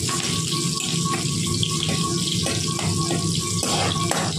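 Food frying in hot oil in a kadai, a steady sizzle, with a few scrapes of a metal spatula as it is stirred.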